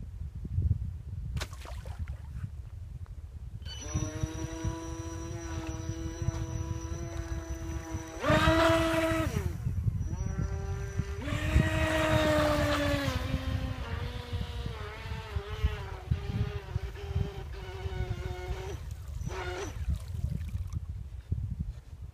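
Small electric RC boat's motor whining, starting about four seconds in. Its pitch jumps up and gets louder in two throttle surges, then wavers lower and cuts out near the end. Wind rumbles on the microphone throughout.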